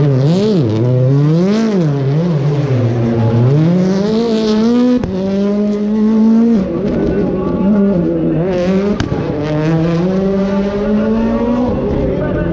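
Rally car engine revved hard up and down as the car drifts, with short squeals from the tyres. After about five seconds the revs are held high in longer stretches, each broken by a short drop.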